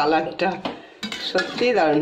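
Metal spatula scraping and clattering against a metal kadai while stirring a thick chicken curry, in two stretches with a short lull about a second in.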